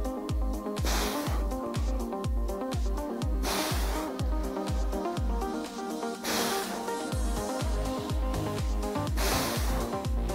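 Background electronic dance music with a steady kick-drum beat, about two beats a second, and a rising hiss that swells every few seconds.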